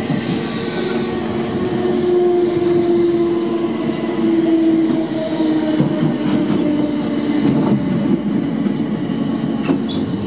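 Class 455 electric multiple unit heard from inside the carriage, running slowly: wheels rumbling on the track, with a steady hum of several tones from the traction equipment, fitted with a new AC traction pack. A single sharp click comes near the end.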